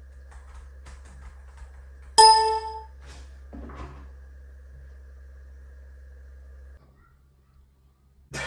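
A single bright phone notification chime, a message alert, sounds about two seconds in and rings out over about half a second. A soft rustle follows as the phone is picked up from the table, over a steady low hum that cuts out near the end.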